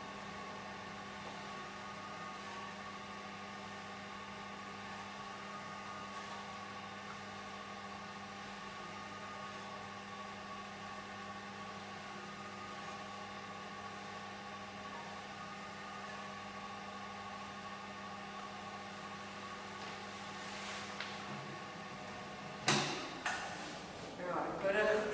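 Steady machine hum with a fixed low tone and a higher whine. A few sharp knocks come near the end.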